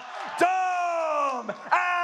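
A man's voice bellowing two long, drawn-out calls, each sliding down in pitch: the ring announcer stretching out the winning fighter's name after a fight decision.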